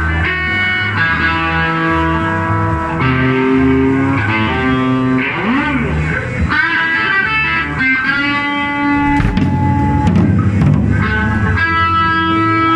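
Live band jamming: an electric guitar plays sustained lead notes over bass guitar and drums, with a note bent up and back down about halfway through.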